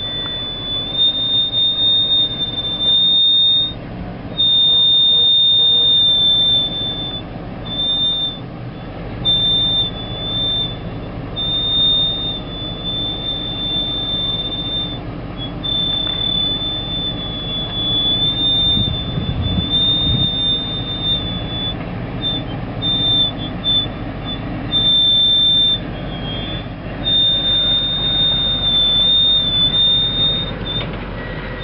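Range Rover P38 crawling over slickrock, its engine a low steady rumble under a high-pitched squeal that starts and stops every few seconds. A deeper surge in the rumble comes about two-thirds of the way through.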